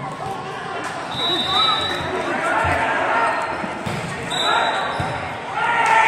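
Voices of players and spectators echoing in a gymnasium, with a few sharp thuds of a volleyball on the court floor. A thin high whistle tone sounds twice.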